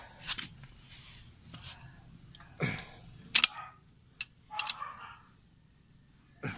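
A series of short metallic clinks and taps from a wrench on a motorcycle engine's oil drain bolt as it is tightened, the sharpest about three and a half seconds in.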